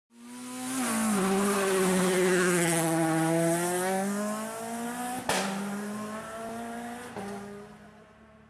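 Car engine and tyre-squeal sound effect for a logo intro: a pitched engine note that drops about a second in and then holds, with a high hiss over the first few seconds. Two sharp clicks come later, and the sound fades out near the end.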